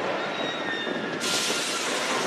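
Steady rushing noise at a roller coaster, like a coaster train running with wind on the microphone, with faint thin whining tones. The hiss turns brighter about a second in.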